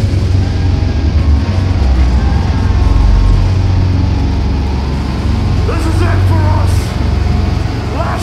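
A loud, steady low rumble from a band's amplified down-tuned guitars and bass, with a shouted voice on the vocal microphone a little before the end.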